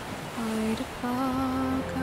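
A woman humming a slow, wordless melody in a few held notes, with a soft steady rumble of sea and wind beneath.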